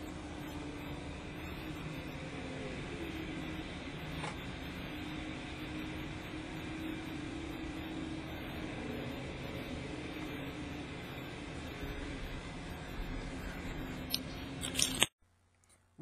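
Steady background noise with a faint low wavering hum and a single short click about four seconds in. It cuts off abruptly about a second before the end.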